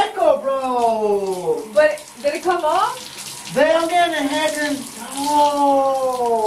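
Handheld shower head spraying water over a bathtub, with a person's long, wordless vocal cries over it, several of them, mostly falling in pitch.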